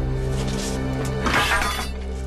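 Background music with steady held notes, under a sharp metallic clash of sword blades, a short one about half a second in and a louder, longer clash and scrape about a second and a half in.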